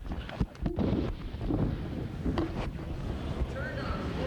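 Rumbling background noise with indistinct voices and a few short knocks.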